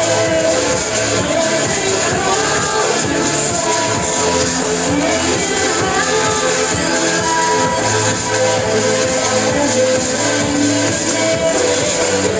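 Trance-style electronic dance music from a DJ set, played loud over a club sound system, with a steady beat and sustained synth tones.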